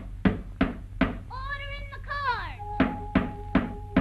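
Wooden gavel knocks, about three a second, in two runs set in time with a 1930s cartoon orchestral score. Between the runs a pitched note holds and then glides down in pitch, and a steady held note sounds under the second run of knocks.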